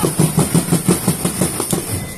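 A drum beaten in a fast, even rhythm of about six strokes a second, stopping abruptly at the end.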